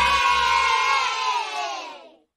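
A group of children cheering together, cut in suddenly and fading out near the end.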